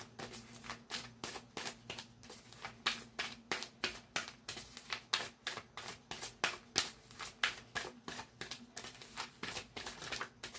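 A tarot deck being shuffled by hand: a steady run of quick card flicks, about three or four a second.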